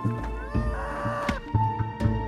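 A shrill, drawn-out cry from about half a second in, rising then holding for about a second before cutting off, over steady background music.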